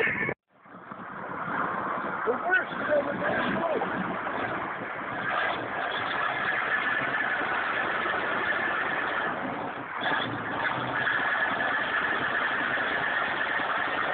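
Heavy truck engine running steadily, with a few short shouts from bystanders about two to four seconds in.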